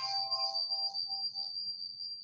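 A grand piano's final chord ringing and dying away as the hands lift from the keys, with a steady high-pitched whine above it.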